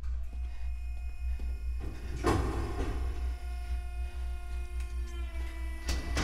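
Horror film soundtrack: a steady low rumble under several held, layered tones, with a sudden sharp hit about two seconds in and another at the very end.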